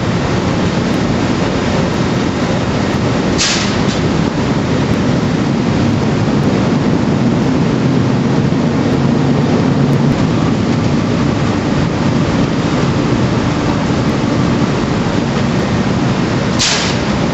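Machinery inside the deck house of the Silver Spade, a Bucyrus-Erie 1950-B stripping shovel, running with a loud, steady, low drone as the deck swings. A short hiss about three and a half seconds in.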